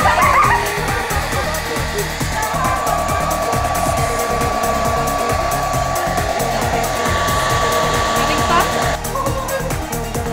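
Hand-held hair dryer blowing steadily, with a high whine joining about two and a half seconds in; it cuts off about a second before the end. Dance-pop music with a steady beat plays underneath.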